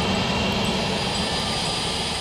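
Twin-engine jet airliner's engines running at taxi power: a steady rushing noise with a low hum and a high whine.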